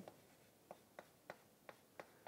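Chalk on a chalkboard as someone writes: a faint run of short taps and clicks, about three a second.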